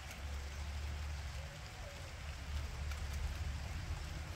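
Faint outdoor background noise: a steady low rumble with a light hiss over it.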